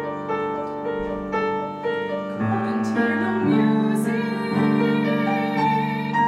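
Grand piano accompaniment playing evenly repeated chords, just under two a second. About halfway through, a woman's classically trained mezzo-soprano voice comes in with vibrato over lower, held piano notes.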